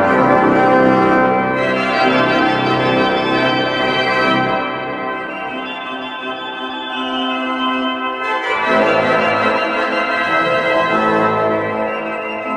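Pipe organ playing sustained full chords. About four seconds in it turns softer and thinner, and about four seconds later it swells back to full sound.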